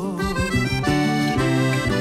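Accordion playing a melodic instrumental passage in an Argentine folk song, with sustained chords and no singing.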